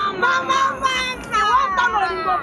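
Several women singing and calling out excitedly together in high voices.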